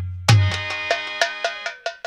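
Folk-music accompaniment: a heavy drum stroke, then a fast run of ringing metallic strikes, about six or seven a second, fading out, over a held harmonium chord.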